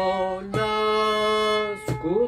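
Kamancheh (Persian spike fiddle) bowing long held notes in a slow practice exercise: the first with a slight vibrato, changing to a new note just over half a second in, then a short break near the end as the next note begins.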